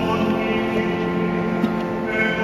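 Choir singing sacred music in long held notes, resounding in a large church.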